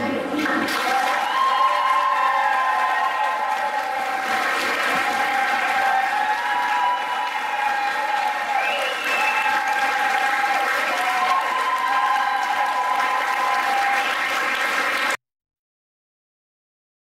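Audience applauding, with voices heard over the clapping; it cuts off suddenly near the end.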